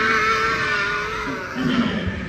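A young girl's voice holding one long high 'aaah', wavering slightly and fading out after about a second and a half.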